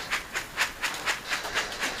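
Feed pellets pouring from a tipped metal bucket onto the feed trough in quick, even spurts, about five a second, as the bucket is shaken while walking.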